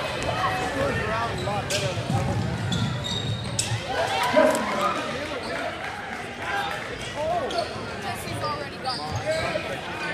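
A basketball bouncing on a gym's hardwood court during play, with spectators talking in the stands.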